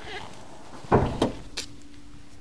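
A single clunk from the 1973 Mercury Marquis Brougham about a second in, as the hood release is pulled and the hood latch pops. A faint steady hum follows.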